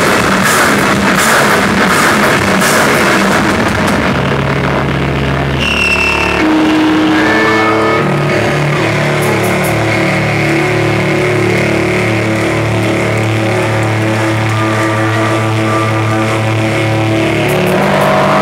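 Live sludge metal band: drums and cymbals crash for the first few seconds, then the amplified bass and guitar are left ringing as held, droning notes. A brief high feedback whine comes in about five and a half seconds in.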